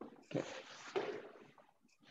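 Rustling and a couple of soft bumps close to the microphone as a person sits back down in front of it.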